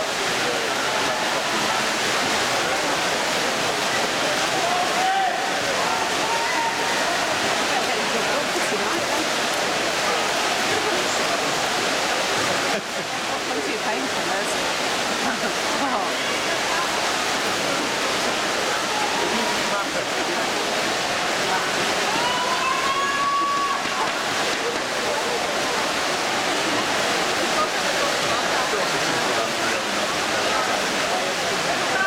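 Spectators cheering and shouting in an echoing indoor swimming-pool hall: a steady roar of many voices, with a few louder single shouts rising above it.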